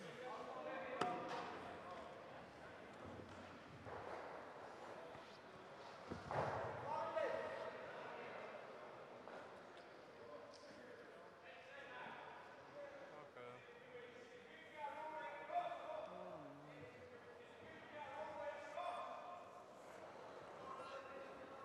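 Quiet curling rink ambience: faint voices of players calling across the ice, with a few sharp knocks, the loudest about six seconds in.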